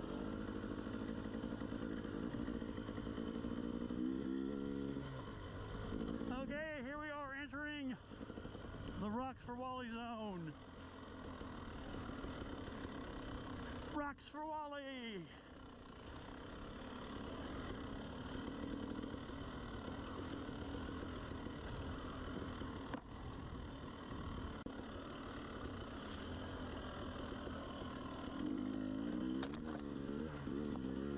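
KTM 300 two-stroke enduro bike engine running under way on a trail, the throttle blipped open and shut: its pitch rises and falls sharply three times between about six and sixteen seconds in, and runs steadier otherwise.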